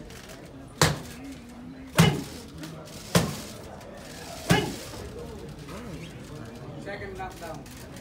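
Boxing punches cracking against a trainer's leather pads: four sharp hits a little over a second apart, each ringing briefly in the gym. Low voices murmur near the end.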